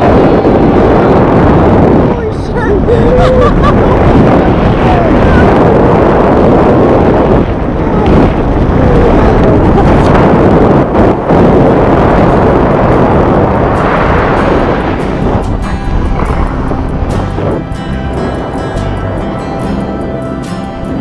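Background music over a loud rush of wind on the microphone during tandem skydiving freefall, with short voice-like sounds in the first few seconds. The wind rush eases over the last few seconds as the parachute flies.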